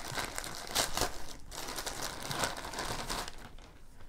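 Clear plastic bag crinkling and rustling in irregular bursts as it is opened by hand and a toy puppet is pulled out, dying down near the end.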